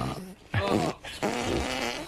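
A person farting: a short noisy burst about half a second in, then a longer one from just after a second.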